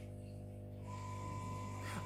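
A low, steady hum, with a thin, steady higher tone joining it about a second in.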